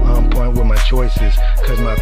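Hip hop track with a heavy, steady bass line, a regular hi-hat beat and a rapped vocal.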